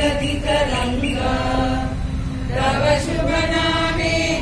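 A group of adults singing together in unison, slow held notes.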